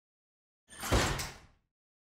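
Title-card sound effect: a short rush of noise that swells into a heavy low impact about a second in and dies away within half a second, like a door sliding shut.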